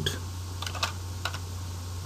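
Computer keyboard being typed: a quick run of separate keystrokes as a five-digit number is entered.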